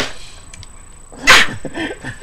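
A man's short burst of laughter a little over a second in, followed by fainter chuckling.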